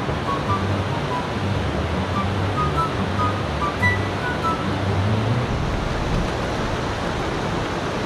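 Fast-flowing river rushing steadily over rocks. Background music with a stepped bass line plays over it and stops about five and a half seconds in.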